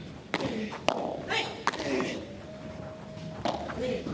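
Padel ball struck back and forth by rackets during a rally, four sharp hits at uneven intervals, ringing in a large hall.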